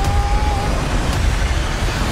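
Film sound effects of a ferry being torn in two: a loud, steady, deep rumble with a noisy wash above it.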